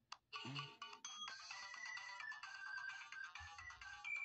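Tinny electronic jingle: a ringtone-like melody of clear notes stepping down and back up in pitch, played through a small speaker.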